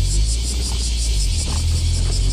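Mazda NB Roadster's four-cylinder engine running at low road speed with the top down. Over it runs a steady, rhythmic high-pitched pulsing, about six pulses a second.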